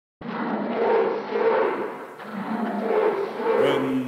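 Opening of a recorded song: a rushing noise swells and fades twice, and a low held note comes in near the end, just before the singing starts.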